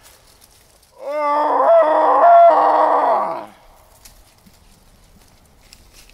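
A man's voice imitating an animal call as a lure: one drawn-out cry starting about a second in and lasting about two and a half seconds, broken twice.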